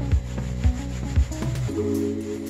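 A cloth rubbing over a vinyl snowmobile seat cover in repeated wiping strokes, about two a second, working conditioner into the cover.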